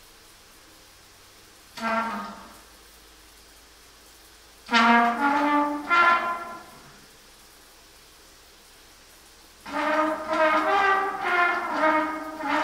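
Unaccompanied trumpet played in a small tiled bathroom: a short note about two seconds in, a phrase of several notes around five to six seconds in, then a longer run of notes from about ten seconds, with quiet pauses between them.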